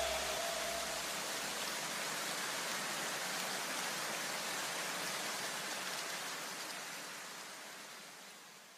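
Outro of an electronic track: a soft, even white-noise wash with a low bass hum that dies away in the first two seconds. The noise itself fades out over the last couple of seconds.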